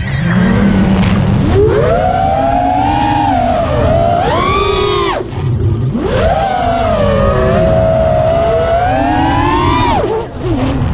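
Racing quadcopter's 2205 2450kv brushless motors and propellers whining, the pitch rising and falling with the throttle. About five seconds in, the whine drops away for about half a second, then climbs back up.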